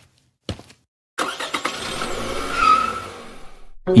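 A single short knock, then a car sound effect: the engine comes in suddenly and the car pulls away, swelling to its loudest past the middle and fading out near the end.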